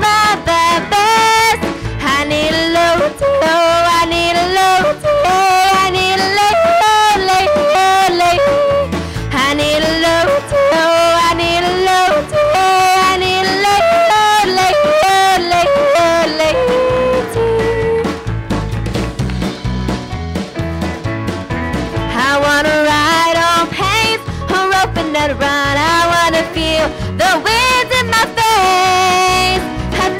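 A young woman's voice yodeling a country song with a live band: the melody leaps back and forth between low and high notes over guitar and drums. A little past halfway the voice drops out for a few seconds while the band plays on, then the yodel resumes.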